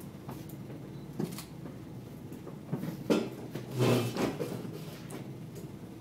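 Ka-Bar knife blade scraping stubble off the upper lip in several short strokes, the loudest about three to four seconds in, over a steady low hum. The blade is too dull to cut cleanly and scrapes the hair off rather than shaving it.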